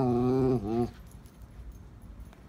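A dog giving one drawn-out, whining vocalization lasting about a second, wavering in pitch at its end before it stops.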